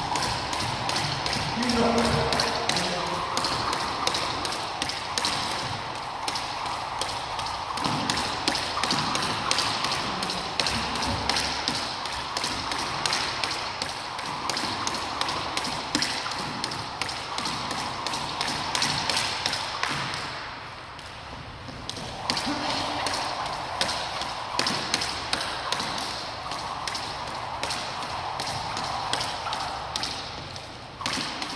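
Skipping rope striking a hardwood floor in a steady run of taps, with the rope swishing through the air between strikes.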